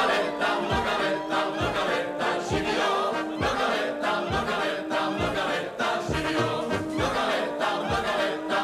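Czech brass-band (dechovka) music with a group of voices singing along over a steady low bass beat, a little more than one beat a second.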